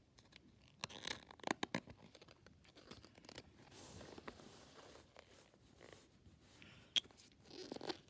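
Paper pages of a large picture book being turned by hand, with faint rustling and crinkling, a soft sliding sweep and a sharp paper click near the end.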